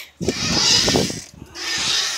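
A swing in motion: two surges of rubbing, rushing noise from the metal swing chains and air past the phone as it swings back and forth.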